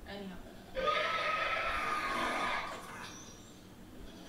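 A dragon's screech from the episode's soundtrack, starting about a second in and lasting about two seconds, a harsh cry with a shrill wavering tone in it.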